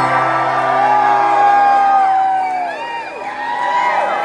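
A live band's song ending: the held chord loses its bass and fades, a long held vocal note bends down and falls away, and the audience answers with whoops and cheers.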